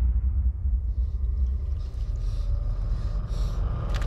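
A deep, steady rumbling drone, part of a horror trailer's sound design, with faint high hissy flickers over it in the second half.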